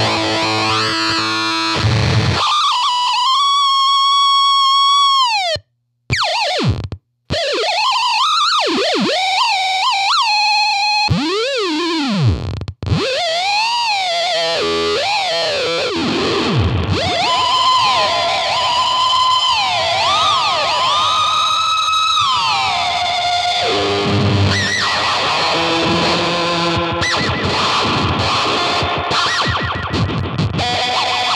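Electric guitar played through a Mantic Flex fuzz pedal with delay, into a small tube amp: distorted, squealing notes whose pitch glides and bends up and down, with two brief cut-outs about six and seven seconds in.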